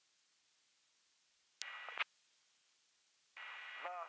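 Aircraft VHF radio heard through the headset. About one and a half seconds in, a short half-second transmission bursts in with a click at each end. Near the end another transmission keys on with a steady hum, and a voice starts to come through.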